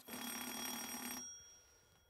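Game-show buzzer or answer sound effect: one steady electronic tone that starts at once, holds for just over a second, then fades out.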